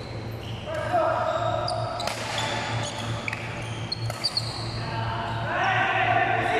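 Badminton doubles rally in a large indoor hall: a few sharp racket-on-shuttlecock hits and short shoe squeaks on the court floor, with players' voices calling out, over a steady low hum.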